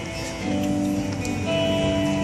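Instrumental backing track for a song playing, guitar-led, with held notes coming in about half a second in: the intro before the singer's voice enters.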